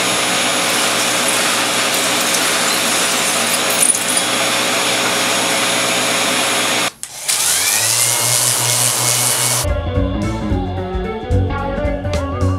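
Handheld power tool running steadily as it carves foam. It cuts out suddenly about seven seconds in, then starts again and spins up with a rising whine. Music takes over near the end.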